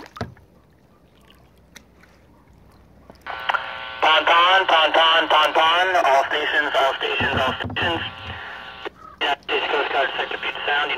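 Marine VHF radio: about three seconds in the squelch opens with a hiss, then a thin, narrow-sounding radio voice comes through, the start of a US Coast Guard broadcast.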